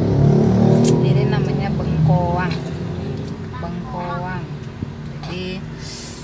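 Car cabin running noise, a low steady rumble, with short indistinct voices over it, a higher voice twice in the middle.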